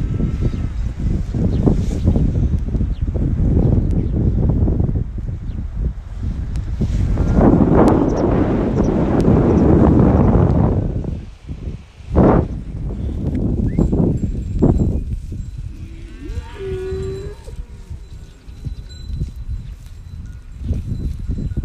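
Wind buffeting the microphone, swelling loudest mid-way. Near the end, one drawn-out moo from grazing cattle lasts about two seconds.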